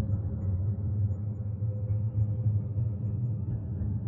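A low, steady ambient drone with a deep hum and a faint held tone above it, like a background music bed.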